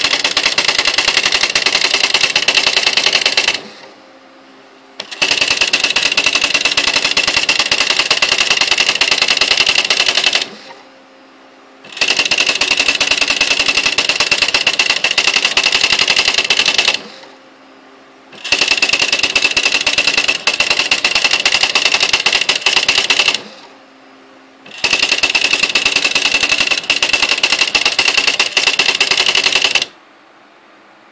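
Smith Corona SL575 electronic typewriter printing automatically in its built-in demo mode: runs of rapid-fire character strikes, each a line of text several seconds long, broken four times by a short pause with a faint motor hum as the carriage returns to the next line.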